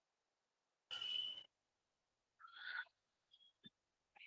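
Near silence on a video-call audio line, broken by two faint, short sounds about a second in and about two and a half seconds in.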